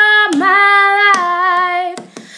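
A young woman singing unaccompanied, holding a long sung "oh": a short held note, then a slightly lower note sustained for about a second and a half with a slight waver in pitch.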